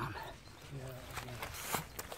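A man's low, steady hum held for under a second, then a brief rustle near the end.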